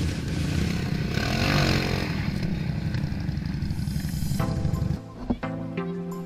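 ATV engine running, revving up and back down about a second and a half in. Near the end it gives way to background music.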